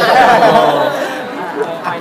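Speech only: several people talking over one another in a crowded press scrum.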